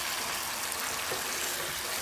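Cauliflower florets frying in oil in a pan, a steady sizzle, while a wooden spatula stirs them.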